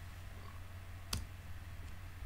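A single computer-keyboard keystroke about a second in, the Enter key opening a new line of code, over a steady low electrical hum.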